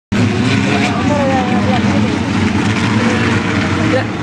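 Several open-wheel dirt-track race car engines running together in a steady drone, with voices over it.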